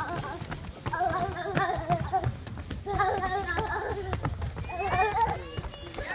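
A high voice vocalizing in drawn-out, wavering tones in three short phrases, the last rising into squeals, over quick running footsteps on a wooden boardwalk.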